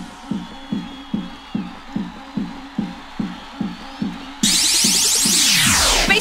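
Bounce-style electronic dance music from a DJ mix: a pitched kick drum plays alone at about two and a half beats a second. Then the full track crashes back in at about four seconds, with a falling sweep near the end.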